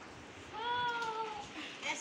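A child's drawn-out, high-pitched excited exclamation lasting about a second, rising then falling in pitch.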